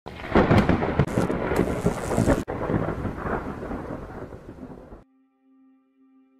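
A long thunder-like rumble with crackle, loudest for the first two and a half seconds, briefly cut off, then fading away by about five seconds in. A faint, steady low tone follows near the end.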